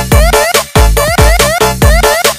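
Electronic dance music, a DJ breakbeat remix: a heavy kick and bass land about twice a second under short, rising synth notes.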